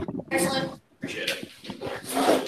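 Indistinct talking voices in short bursts with brief pauses.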